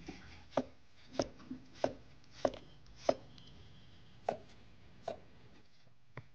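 A kitchen knife chopping raw sweet potatoes on a board: seven firm chops about 0.6 s apart, with a short pause after the fifth.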